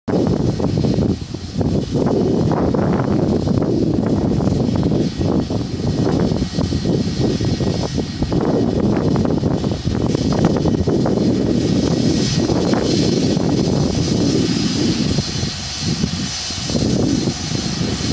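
Deutz-Fahr Agrotron 7250 TTV tractor working under load, pulling a rotary power harrow with a disc harrow through tilled soil: a loud, continuous diesel engine rumble, rough and uneven in level.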